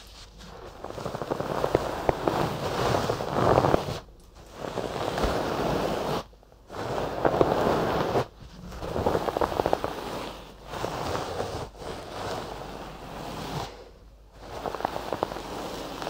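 Fluffy stuffed toy brushed against the ears of a binaural microphone: a series of close rustling strokes, each one to three seconds long, with short breaks between them.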